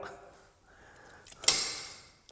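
A single sharp knock about one and a half seconds in, from a knife or utensil against the counter while cooked lobster is handled, over quiet kitchen room tone.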